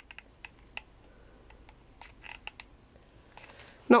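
Scattered light clicks and taps of a hot glue gun and a small metal bead cap being handled, as the gun is tried to see if its glue has melted yet. It has not yet heated up enough.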